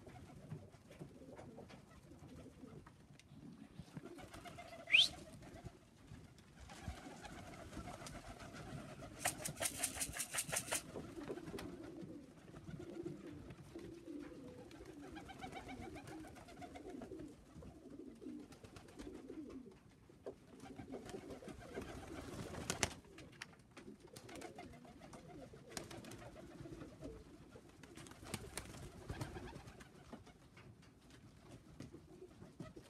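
Tippler pigeons cooing in a low, steady murmur, with bursts of wing clatter as birds flap and land, one rapid run of wingbeats about ten seconds in. A brief, loud rising whistle sounds about five seconds in.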